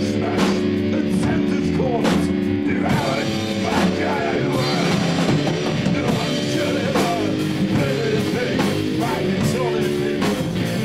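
A rock band playing live: electric guitars over a drum kit, with repeated cymbal crashes.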